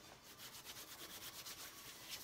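Hands rubbing briskly together, a fast, faint run of dry rubbing strokes, about ten a second.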